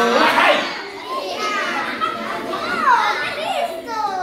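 Several children's voices talking and calling out over one another, with high sliding exclamations; a held vocal note cuts off right at the start.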